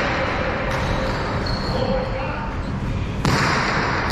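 A single sharp crack of a jai alai pelota hitting hard about three seconds in, ringing on in the large court, over a steady hall noise.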